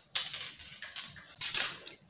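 Three short scratchy swishes of a metal ruler and chalk being worked over silk fabric while a line is ruled, the last and loudest near the end.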